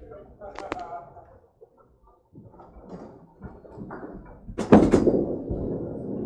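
Candlepin bowling lane sounds: wooden knocks and clatter from the ball and pins, with a loud heavy thud about four and a half seconds in.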